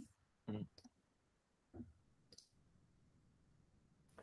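Near silence: room tone, broken by a short murmured 'mm-hmm' about half a second in and a faint click a little past halfway.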